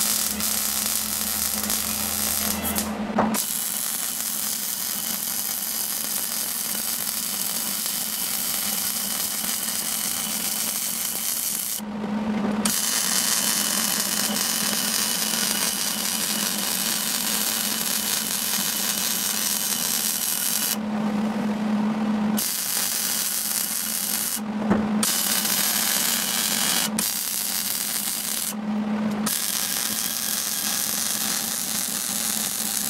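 MIG welder arc crackling and sizzling in long steady runs while a steel handle is welded onto a steel tank. The arc stops briefly about five times, and in each pause the welder's low steady hum is left.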